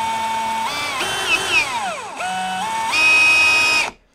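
Brushless cordless drill running as it bores a shallow hole into wood: a steady motor whine that steps up in speed, slows for about a second, climbs back up and stops just before the end.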